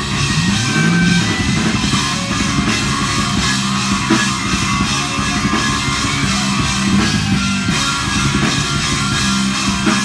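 A melodic black metal band playing live: distorted electric guitar riffing over a drum kit, loud and dense, with a sliding guitar note about half a second in.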